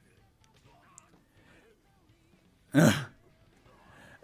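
A man briefly clears his throat with a short 'uh' about three seconds in. The rest is very faint.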